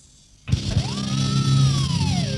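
Faint cassette hiss, then about half a second in the death metal track starts abruptly: a sustained, heavily distorted low guitar chord, with a high note gliding up and then slowly falling over it.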